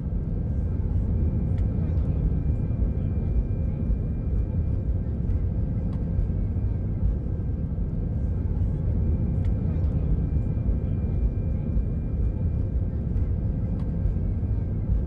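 Cabin noise of an Airbus A319 jet airliner taxiing: a steady low rumble of engines and airflow with a faint, thin high whine and occasional light clicks and rattles.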